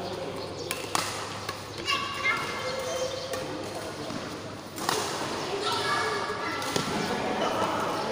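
Badminton rackets hitting a shuttlecock during a rally, a handful of sharp pops at irregular intervals, with footfalls on the court, in a large hall.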